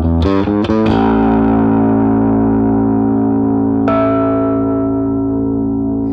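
Electric bass guitar played through the Kasleder Token bass booster/overdrive pedal, with a gritty, overdriven tone. A quick run of plucked notes is followed by a note left to ring out and sustain, and a higher note is plucked over it about four seconds in.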